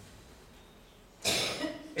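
A man coughs once into a handheld microphone, a short, sudden cough just past the middle that fades within about half a second, after a second of quiet room tone.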